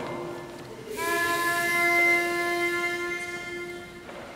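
Pitch pipe blown to give an a cappella group its starting note: a held tone fades out, then a second held note starts about a second in and lasts about three seconds, slowly dying away.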